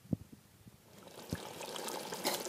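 Mutton curry simmering in a pot, with soft bubbling plops every fraction of a second. About a second in, a rising hiss as boiled rice is tipped in on top of the hot liquid.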